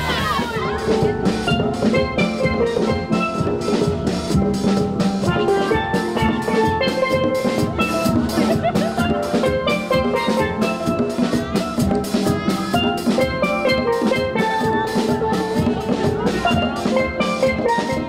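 A steel drum band playing: several steel pans struck with mallets, giving bright, short pitched notes in a quick, steady rhythm, over a drum kit beat.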